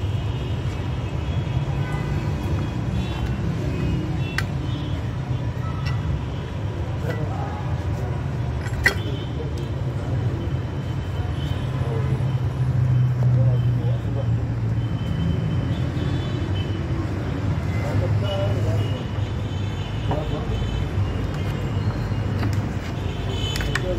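Calpeda electric water pump running with a steady low hum, with one sharp click about nine seconds in.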